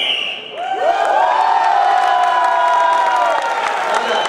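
A short whistle right at the start. Then, from just under a second in until near the end, spectators in the arena let out a long drawn-out shout of support, several voices held together, as the judges' flag decision is shown.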